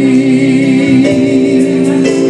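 A singer holds one long note with vibrato over sustained keyboard chords in a live ballad performance.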